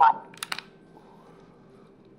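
A few quick, sharp clicks about half a second in, then faint steady room hum.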